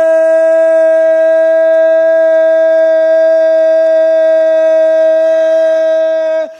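A single man's voice over the loudspeakers holding one long, steady, loud note, the drawn-out call of a religious slogan (nara).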